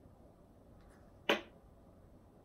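A single sharp tap about a second and a half in: a small cup knocked down onto a wooden tabletop.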